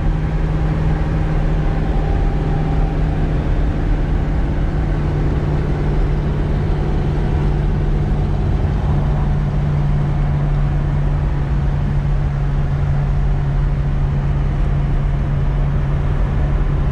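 Steady engine drone and road noise of a car cruising at an even speed, heard from inside the cabin. With no window glass in the car, wind and tyre noise come straight in.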